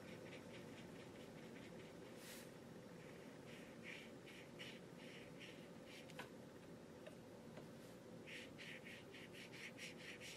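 Faint, quick strokes of a wet paintbrush on watercolor paper, in two short runs, over near-silent room tone.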